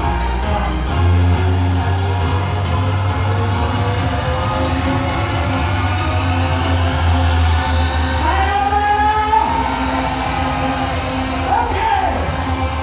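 Amplified live pop music with a heavy bass line and a man singing into a microphone; the bass drops back about two-thirds of the way through, and the voice is clearest in the second half.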